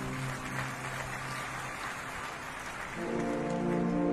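Drum and bugle corps brass playing a slow ballad: a held low chord fades out under a steady wash of noise, and a new soft brass chord comes in about three seconds in.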